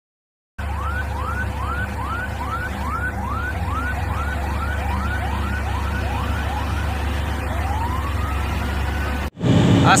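A siren giving quick rising whoops, about two a second, then one slower rising wail, over the steady low rumble of heavy Volvo trucks' diesel engines; it all cuts off suddenly shortly before the end.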